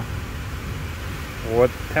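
Tesla's cabin climate system blowing air, a steady rush of air with a low hum under it, just after the climate control was set to Auto.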